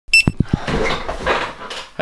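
A brief high ding, then three quick low thumps in the first half second, followed by clothing rustling and handling noise as someone moves right up against the camera.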